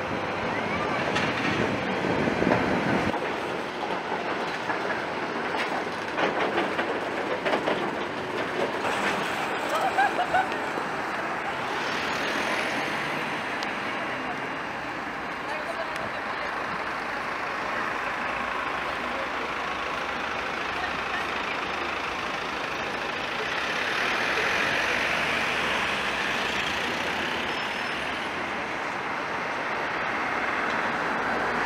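Tatra T6A5 tram running on street track, with wheel and motor noise over a steady street background and people talking nearby. The sound swells as the tram draws nearer near the end.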